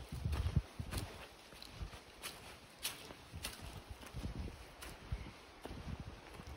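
Footsteps on a dirt and leaf-covered forest trail: irregular scuffs and crunches roughly every half second to second.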